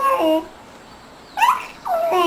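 A young baby cooing and babbling: short high-pitched vocal sounds with a bending pitch, one at the start and another from about a second and a half in.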